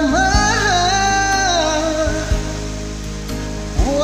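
Karaoke backing track of a ballad playing, with sustained chords. A sung melody line glides over it in the first two seconds, and a new sung phrase starts near the end.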